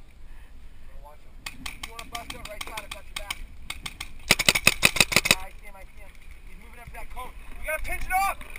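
Paintball markers firing: scattered shots, then a rapid string of about ten shots in just over a second near the middle, the loudest sound, from a Planet Eclipse Etek2 electro-pneumatic marker close by. Faint shouting voices lie under and between the shots.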